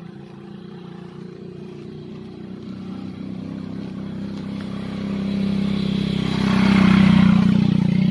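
A motorcycle engine running steadily, growing louder as it approaches, with a rush of noise near the end as it comes close.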